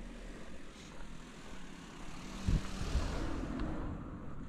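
Engine noise of a passing vehicle, a rushing sound that swells to a peak about three seconds in, with a few low thumps near the peak.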